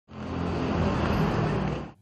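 Street traffic noise, with the steady sound of car engines and tyres, fading in and cutting off suddenly near the end.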